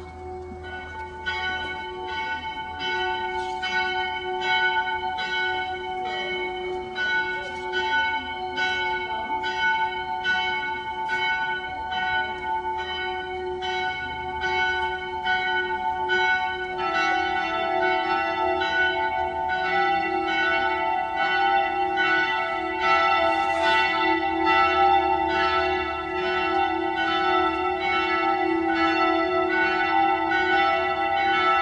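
Bells ringing in a steady peal, one stroke following another with their ringing overlapping; the set of notes changes about halfway through.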